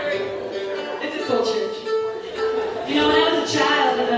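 Acoustic guitar strings plucked and left ringing as the guitar is tuned between songs, with new notes struck about a second in and again near the end.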